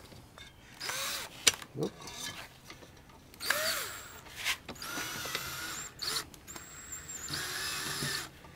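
Cordless drill driving a screw that fixes a fan blade iron to a ceiling fan's motor, run in about four short bursts with pauses between, the whine rising in pitch as each burst starts.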